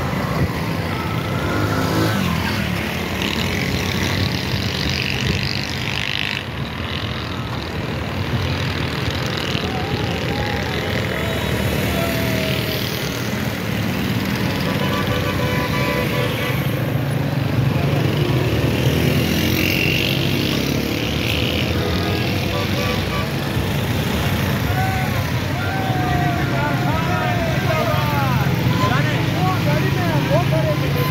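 Motorcycle and car engines running in a slow-moving road procession, with people's voices shouting over them, more of them near the end.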